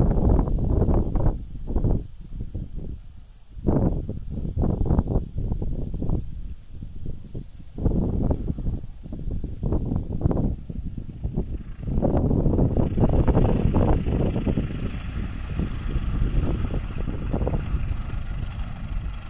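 Wind buffeting the microphone in irregular gusts, with a Scout tow plane's piston engine and propeller, landing on grass and taxiing in, growing louder and steadier over the second half as it comes close.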